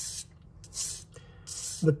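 400-grit sandpaper wrapped around a pen, wet with dish soap, rubbed along the recurved edge of a boning knife to sharpen it. Three short rasping strokes, about one every three-quarters of a second.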